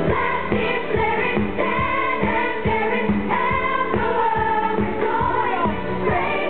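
A female lead and a chorus of women singing a pop-gospel stage musical number over a band with a steady beat.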